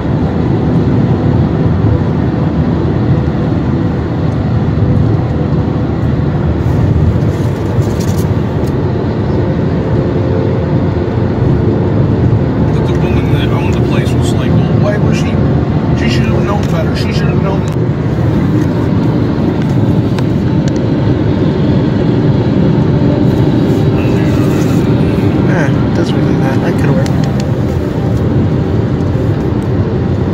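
Steady road and engine noise inside the cabin of a moving car, with muffled voices at times.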